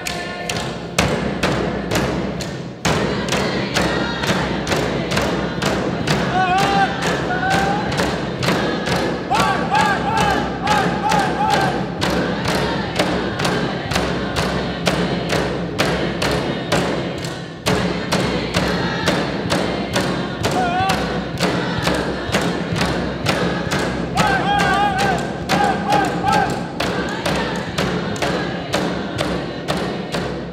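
Inuvialuit drum dance song: a row of large frame drums (qilaut) struck together in a steady beat about twice a second, with a group singing over it. The beat pauses briefly twice, about three seconds in and again just past halfway.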